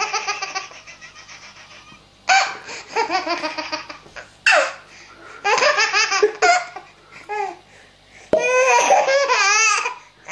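Baby laughing hard in repeated bouts of rapid, breathy belly laughter. Each bout lasts about a second and they come one after another with short pauses between.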